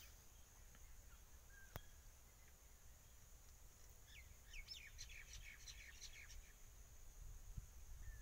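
Faint outdoor ambience: a steady high thin hum, with a quick flurry of short bird chirps from about four to six and a half seconds in and a single faint click near two seconds.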